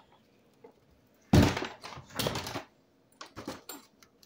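Door being handled: two thumps about a second apart, the first the loudest, then a few lighter clicks and knocks.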